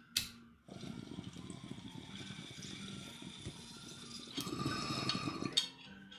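Glass water pipe (bong) bubbling as smoke is drawn through its water, starting about a second in after a short click, louder for the last second before stopping abruptly.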